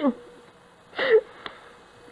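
A person's short, breathy sigh about a second in, its pitch falling, followed by a faint click.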